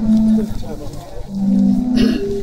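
Zadar sea organ: waves pushing air through pipes under the stone steps, sounding low held tones through the slots in the steps. One tone comes just after the start, and a longer, slightly lower one comes in the second half.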